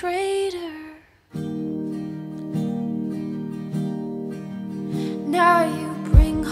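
Recorded pop ballad with a female vocal: a sung line ends about a second in and there is a brief near-silent pause. Then guitar chords are strummed and left ringing, and the singing comes back near the end.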